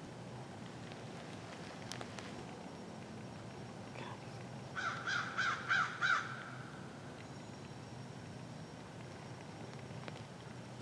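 A crow cawing about five times in a quick run, roughly three caws a second, starting about five seconds in.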